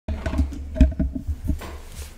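Low rumbling handling noise with a series of soft knocks, the loudest about 0.8 s in, as things are moved about on a desk close to the microphone.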